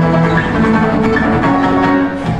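Live acoustic band playing an instrumental passage: two acoustic guitars and an electric bass, with notes held and changing about every half second.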